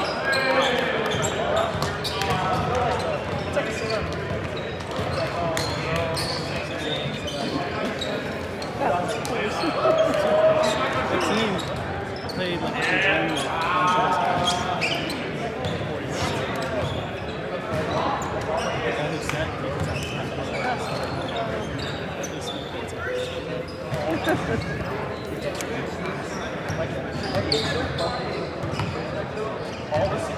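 Indistinct chatter of volleyball players echoing in a large gymnasium, with scattered short thuds such as balls bouncing on the hardwood floor.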